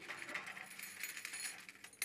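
A heap of gold jewellery and chains jingling and clinking as a hand sifts through it and lifts out a necklace, a steady patter of small metallic clicks.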